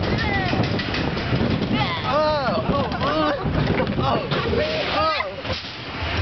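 A spinning wild-mouse roller coaster car running along its steel track, with wind on the microphone. Riders' voices rise and fall in laughter and calls about two seconds in and again near five seconds.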